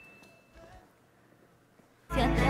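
Near silence: faint room tone, with a faint steady high tone that stops about half a second in.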